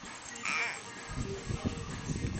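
A toddler's short, high-pitched squeal, then a run of low, irregular thumps from the phone camera being moved and knocked.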